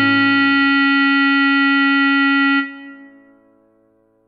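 Clarinet holding one long note over a held backing chord. Both stop about two and a half seconds in and die away to near quiet.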